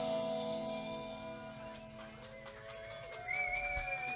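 Live rock band: a held chord fades away, then sliding, wavering notes come in, and about three seconds in a high note glides up and holds with a wobble.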